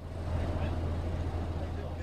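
Steady low engine rumble, getting louder about a third of a second in, with faint voices underneath.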